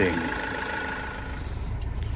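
Renault Master van's engine idling: a low steady rumble with a faint steady whine over it that stops about three-quarters of the way through.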